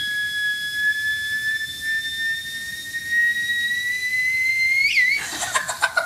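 Theremin holding a single high tone that slowly rises in pitch as a rabbit's ears move near its pitch antenna. About five seconds in the note gives a quick upward swoop and stops, and a woman laughs.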